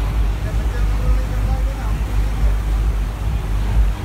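Steady low rumble of a moving boat, its engine mixed with wind buffeting the microphone, over the wash of the churning wake.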